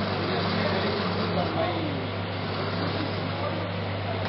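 Small motor-driven silk sliver-making machine running with a steady low hum, its gears and rollers drawing silk fibre into sliver. Voices can be heard talking in the background.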